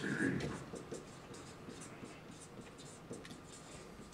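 Marker pen writing on a flip-chart pad: a run of short, quiet strokes across the paper.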